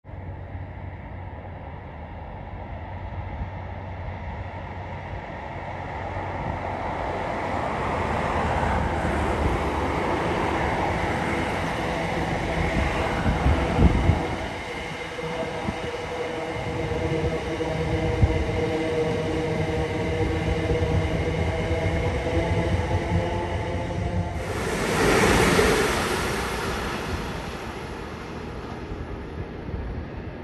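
A c2c electric multiple-unit passenger train running past on the rails: the rumble of the wheels builds over the first several seconds and stays loud, with a steady whine of several tones through the second half. A short, louder rushing burst comes about 25 seconds in.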